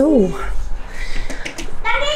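A cat meowing once, a short call that rises and falls in pitch.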